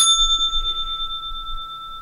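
A bell struck once, sharp at the start, then ringing on with a steady high tone; its highest overtones fade within about a second.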